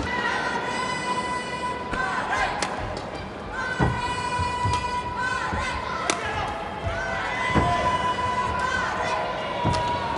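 Badminton rally in an arena: sharp impacts of racket strikes on the shuttlecock and thuds of footwork on the court, a few seconds apart. A steady held tone sits under it in the background.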